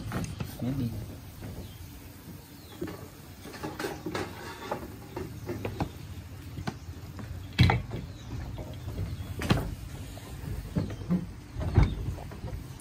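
Scattered knocks and clinks of tableware and the hot pot's lid, three sharper knocks in the second half, over low murmuring voices.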